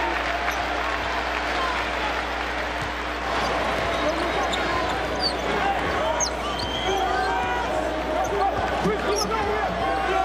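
A basketball being dribbled on a hardwood court against the steady noise of a packed arena crowd, with a voice talking over it.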